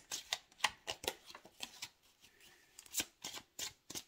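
Tarot cards being shuffled by hand: a run of quick, sharp card slaps and flicks that lulls about two seconds in, then picks up again with a few more near the end.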